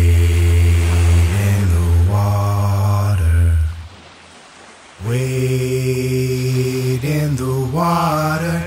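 A low male voice chanting long held notes with no accompaniment, in two phrases with a short lull about four seconds in; the pitch moves in the second phrase.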